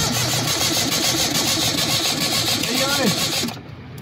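Suzuki Cultus 1000cc three-cylinder engine cranking on the starter with an even, rapid pulse, after its head gasket replacement. It stops suddenly about three and a half seconds in.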